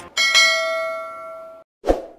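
Notification-bell chime sound effect from a subscribe-button animation: a click, then a bell struck twice in quick succession that rings and fades over about a second and a half. A short low thump follows near the end.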